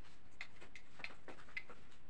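Light clicks and taps, about five in two seconds, from small things being handled, over a steady low hiss.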